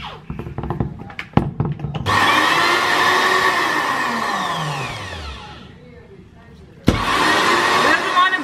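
Magic Bullet personal blender: a few clicks as the cup is pressed onto the base, then about two seconds in the motor starts abruptly, runs, and slows with a falling whine until it cuts out near six seconds. A sharp click about seven seconds in and it starts up again. The motor dying mid-blend is the stuttering the owner complains of.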